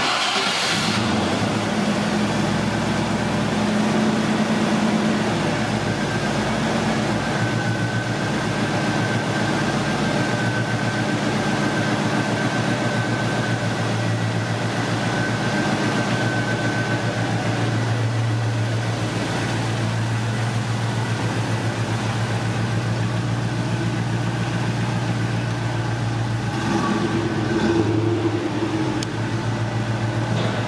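A Land Rover Defender 90's 4.0-litre Rover V8 starts up and settles into a steady idle. It runs a little faster for the first few seconds, the note drops about seven seconds in, and it rises briefly near the end.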